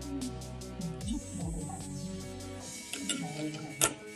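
Background electronic music with steady notes and sliding bass, and one sharp click near the end.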